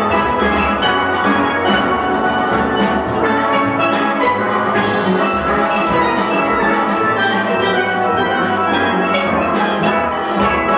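A full steel band playing together: many steel pans ringing out quick notes over a drum kit, steady and without a break.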